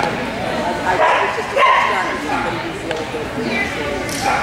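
A dog barking in short bursts over the chatter of people.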